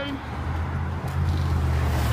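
Steady low hum of a motor vehicle's engine running close by, over general street traffic noise.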